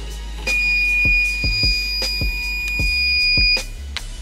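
Hat heat press timer buzzer sounding one steady high-pitched beep for about three seconds, signalling that the press time is up. Background hip hop music with a steady beat plays throughout.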